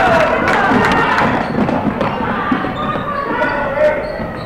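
Gym crowd noise with spectators' voices and shouting, over a basketball bouncing on the hardwood court and several sharp thuds as players drive to the basket.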